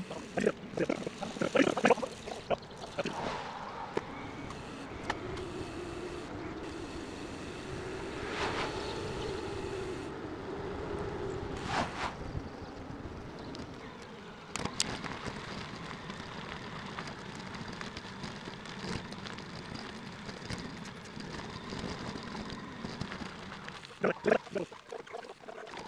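Fast-forwarded audio of a bicycle ride: a jumble of wind and road noise. Short, garbled, speech-like bursts come in the first couple of seconds, and there are a few sharp clicks later on.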